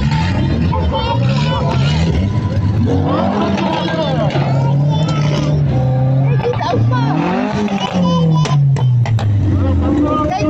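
Race car engines running at low speed on a parade lap, one engine's pitch rising as it revs about seven seconds in and then dropping back. Crowd chatter runs underneath.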